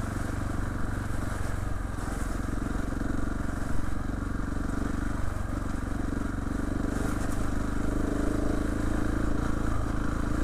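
Trail motorcycle engine running steadily while riding along a muddy lane; the engine note picks up a little near the end.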